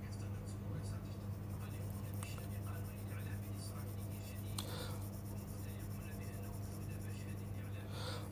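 Faint tapping and scratching of a stylus on a tablet screen as an area is shaded in with short strokes, over a steady low hum.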